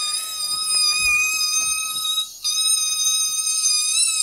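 A boy holding one long, very high-pitched shriek, steady in pitch, with a short break for breath about two seconds in.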